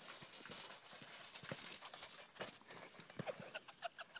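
Golden retriever puppy scuffling after a ball in snow and dry fallen leaves: a faint, irregular run of soft crunches, rustles and light knocks from its paws and the ball.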